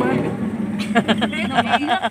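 Voices of several people talking close by inside a van, with quick, choppy speech in the second half.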